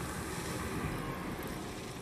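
Steady rushing, wind-like noise from the TV episode's soundtrack, without speech or clear music.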